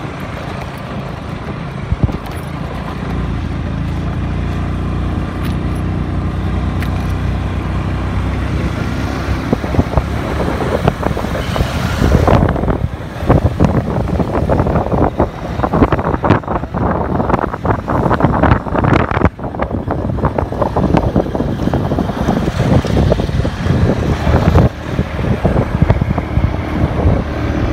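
Motorcycle engine running steadily while riding, with wind buffeting the microphone; about halfway through the wind noise turns loud and gusty, partly covering the engine.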